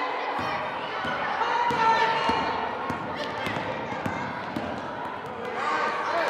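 A basketball bouncing several times on a hardwood gym floor during play, among children's voices echoing in the gym.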